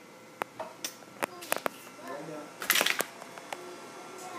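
Handling noise on a phone's microphone: a string of sharp clicks and knocks, with a louder rubbing scrape about three seconds in. Faint voices talk in the background.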